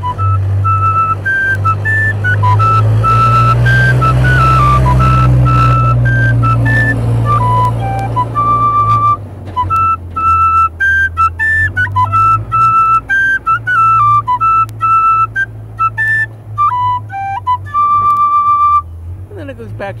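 Tin whistle playing the B part of a Scottish strathspey, one melodic line of clear high notes with a brief break about halfway through. A steady low rumble runs underneath.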